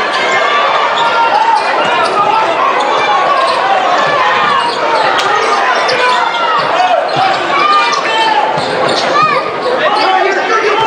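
A basketball being dribbled on a hardwood court, with sneakers squeaking as players cut, over the steady murmur of an arena crowd.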